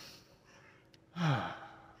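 A man's deliberate relaxing sigh: a soft breath in, then about a second in an audible out-breath through the mouth whose voice falls in pitch and fades.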